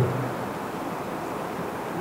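Steady rushing outdoor noise, like wind on the microphone. A white lioness's low call trails off at the very start, and her next call begins right at the end.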